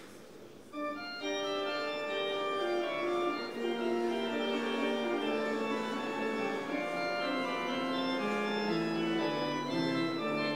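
Church organ starts playing about a second in, holding sustained chords that change every second or so.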